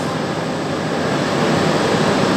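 Steady, even rushing background noise with no distinct events, of the kind made by a fan or running machinery in a workshop.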